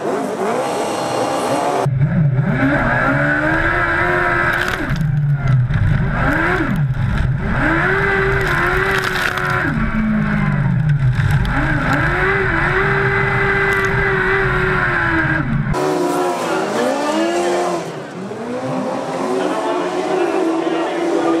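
Speedway sidecar engines racing on a dirt track. For most of the stretch one engine is heard up close, heavy and rumbling, its pitch rising on the straights and falling into the turns over and over; near the end the sound switches to several outfits passing with their engine notes sweeping up and down.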